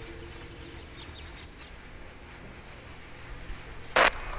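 Outdoor ambience: a few faint bird chirps in the first second or so over a low steady rumble, then a sudden loud hit right at the end.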